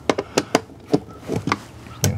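A screwdriver's metal tip tapping and clicking against the screws and terminals of an RV breaker panel, about eight short, sharp clicks spaced unevenly.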